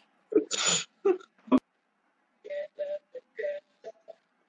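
Men's voices over a video call without words: a breathy laugh early on, a click, then a run of five or six short, steady-pitched vocal notes.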